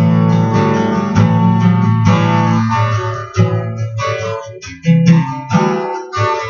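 Acoustic guitar strumming chords, ringing fully at first, then in choppier strokes with short breaks between them from about halfway through.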